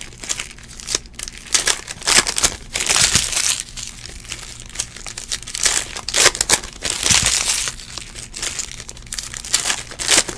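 Foil trading-card pack wrappers being crinkled and torn open by hand, in irregular rustling bursts about every half second.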